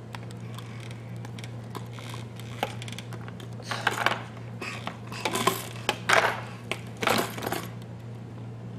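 Hard plastic baby activity-centre toy clicking and rattling in short bursts as a baby grabs and mouths its bead arch. The clatter is sparse at first and comes thicker in the second half.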